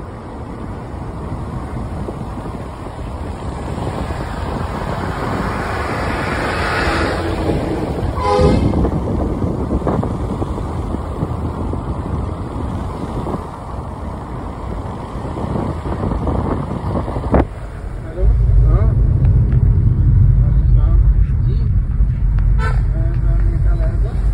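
Wind and road noise from a moving car, with a brief car-horn toot about a third of the way in. Past the two-thirds mark comes a sharp click, after which a steady deep rumble takes over.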